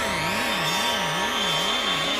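Electronic magic-spell sound effect: a wavering tone that swings up and down in pitch about two and a half times a second, over a hissing shimmer, as a spell zaps a woman into fainting.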